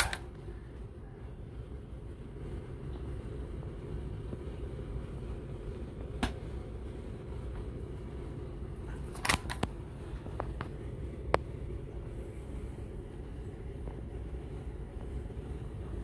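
Handling noise over a steady low hum: a few short sharp clicks and knocks, one at about six seconds and a cluster from about nine to eleven seconds in.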